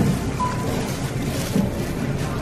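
Thin plastic shopping bag rustling and crinkling right against the microphone as it is handled on a counter.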